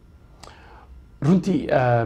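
Speech only: after a short pause, a man starts talking about a second in.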